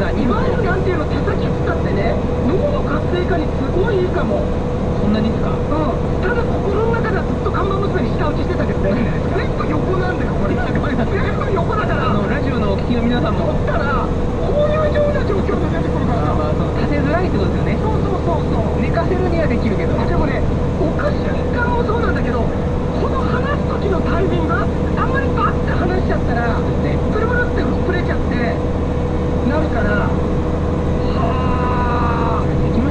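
Steady drone of a heavy truck's diesel engine heard inside the cab, with a constant hum, under continuous indistinct talk.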